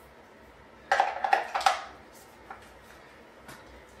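Hard plastic clicks and clatter as camera batteries are handled and seated in a dual USB battery charger. A cluster of clicks comes about a second in, followed by two faint single ticks.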